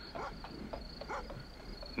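Faint crickets chirping in a steady high-pitched drone: night ambience in a film soundtrack, heard in a pause in the dialogue.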